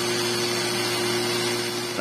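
Nagawa NCG100 cordless angle grinder running free with no load at its top speed setting, a steady unchanging motor hum. At this setting it reaches only about 7,100 rpm, low for an angle grinder, which usually runs at over 10,000 rpm.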